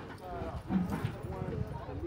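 Indistinct voices talking quietly, with a few light knocks.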